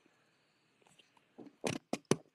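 Near silence, then a few short clicks close together near the end.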